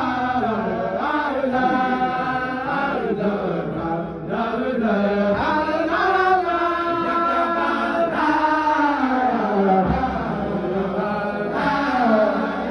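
A group of men chanting a dhikr together, unaccompanied voices carrying long, sliding melodic lines without a break.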